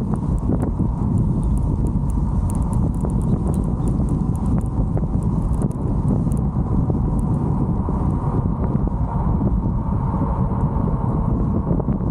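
Wind rumbling on a helmet-mounted camera's microphone with tyre noise on asphalt as an e-bike rolls along, peppered with scattered sharp clicks.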